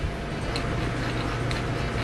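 Steady low kitchen hum with a couple of faint light ticks about a second apart.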